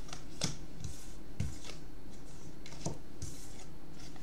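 Tarot cards being handled and laid down on a wooden table: a few light taps and slides of card on wood, spread over the few seconds.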